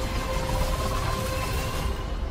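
Film trailer sound design: a deep, steady rumble under a held droning tone.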